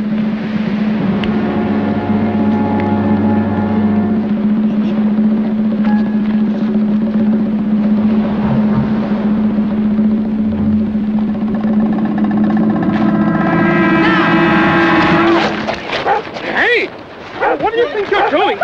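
Motorboat engine running steadily, getting louder and fuller from about twelve seconds in, then cutting off suddenly a few seconds before the end.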